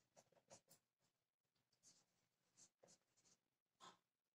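Very faint, short strokes of a marker pen writing on a whiteboard, a handful of separate strokes scattered through an otherwise near-silent room.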